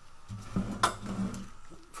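A metal exhaust J-pipe is handled and shifted on a workbench, with small clinks and knocks of metal. The sharpest knock comes a little under a second in.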